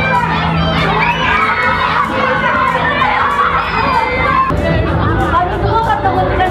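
A crowd of children shouting and screaming all at once while they run and play.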